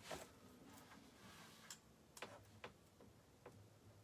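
Near-silent room tone with a handful of faint, scattered ticks.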